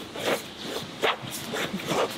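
Jiu-jitsu gi fabric rustling and scraping as two grapplers strain and shift against each other on a mat, in a few short swishes.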